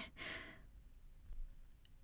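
A young woman's short, breathy sigh lasting about half a second, with a faint click or two near the end.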